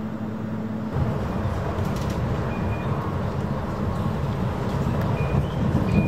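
A catamaran ferry's engines hum steadily; about a second in, a louder, rougher low rumble takes over, with a few short high beeps.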